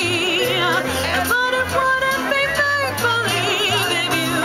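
A woman singing a melody into a microphone, with a wavering vibrato on her held notes, over an instrumental accompaniment that has a steady stepping bass line.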